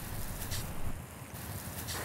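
Steady hiss of water spraying from a garden hose onto freshly dug soil, with a low wind rumble on the microphone.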